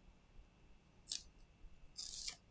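A single short, crisp click from metal tweezers working at the replacement display's cable, about halfway through, over faint room tone.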